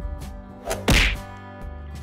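A sharp cartoon impact sound effect about a second in, preceded by a smaller click, as the animated surprise egg splits open. Quiet background music runs underneath.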